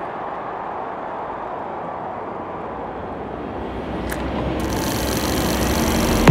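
A steady rushing noise that swells louder through the second half, with a high hiss coming in about two-thirds of the way through: a sound-design riser building toward a hit.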